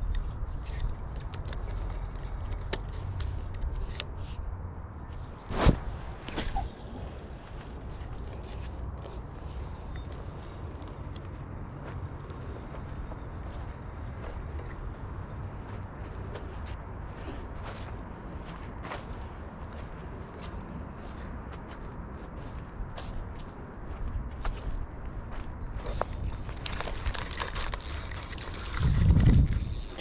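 Steady low rumble of wind and handling noise on a body-worn camera microphone while a spinning rod and reel are worked, with scattered faint clicks and a sharp knock about six seconds in; a louder rustling thump comes just before the end.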